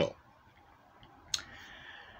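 A single sharp click a little past halfway, followed by a faint soft hiss, in an otherwise quiet room.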